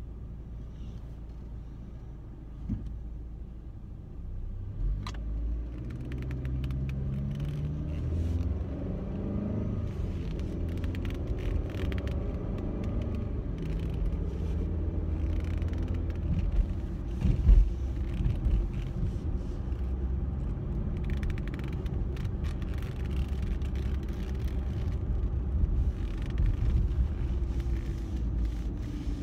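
A car heard from inside its cabin: engine and road rumble grow as it pulls away about five seconds in, with the engine note climbing slowly as it gathers speed. A few short clicks and knocks sound over it, the loudest about two-thirds of the way through.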